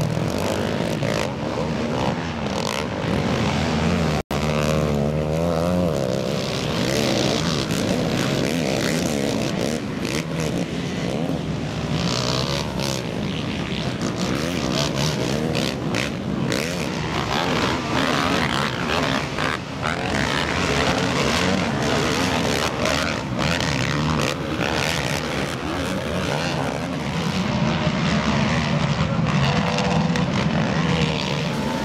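Several race quads' engines revving, their pitch rising and falling with the throttle, with a split-second dropout about four seconds in.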